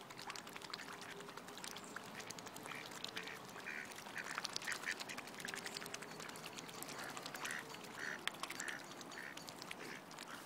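Waterfowl on a lake giving runs of short quacking calls, several a second. The calls come in two bouts, the first from a few seconds in and the second from about seven seconds in.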